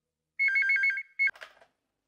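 Wall-mounted intercom phone ringing with an electronic two-tone warble: about half a second of rapidly alternating tones, a short second burst, then it stops with a click.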